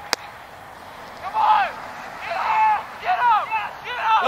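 Several people shouting and cheering. The calls start about a second in and follow one another, with a sharp click just at the start.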